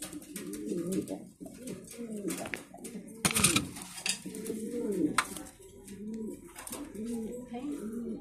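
Mundian fancy pigeons cooing over and over in a cage, in low wavering calls. A brief loud rustle comes about three seconds in.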